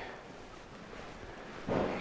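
Faint, even background hiss of a quiet room, with no distinct sound events. A man's voice starts up near the end.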